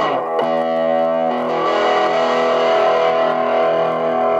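Distorted electric guitar, a Gibson Les Paul Studio played through a Marshall MS4 microstack whose headphone output is modded to drive a 10-inch Marshall cabinet. A chord is struck about half a second in and changed about a second later, then left to ring out.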